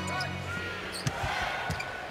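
Basketball dribbled on a hardwood court, a few separate thuds over the steady murmur of an arena crowd.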